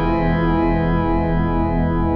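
Yamaha DX7IID FM synthesizer patch holding a sustained tone rich in overtones, recorded dry in mono with no effects, with a fast, even pulsing in the bass.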